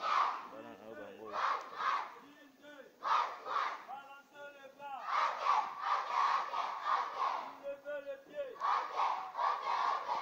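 A crowd of schoolchildren shouting and chanting together in quick rhythmic bursts, several pulses a second, with a single voice heard in the gaps between the group bursts.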